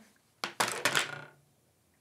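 A quick cluster of sharp plastic clicks and taps, about half a second in and over within a second, from a makeup brush and a compact eyeshadow palette being handled.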